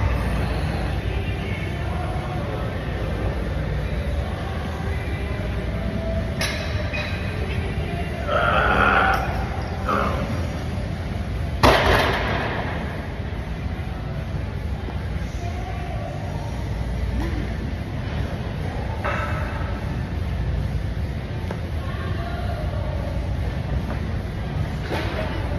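Gym room noise with background music playing, and one sharp bang about halfway through.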